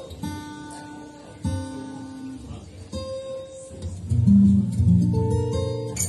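Solo Dion Model No.4 acoustic guitar played fingerstyle. Single notes ring out quietly at first, then the playing grows louder and fuller with deep bass notes about four seconds in.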